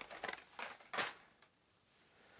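Hot Wheels blister-carded cars being handled: a few short plastic-and-cardboard clicks and rustles in the first second, then quiet.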